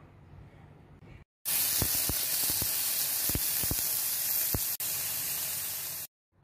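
Food frying in hot oil in a pan: a steady sizzling hiss dotted with pops and crackles. It starts abruptly about a second and a half in, after a moment of faint room tone, and breaks off for an instant near the end.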